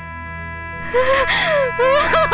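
A woman crying, breaking into gasping sobs with wavering cries about a second in, over background music of long held tones.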